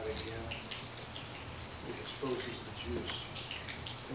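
Scattered small crackles and crinkles of thin plastic film as the sealed tops of prefilled communion cups are peeled back.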